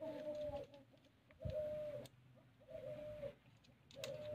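A bird's repeated low calls: three drawn-out notes about a second and a quarter apart, each held level and then falling at its end.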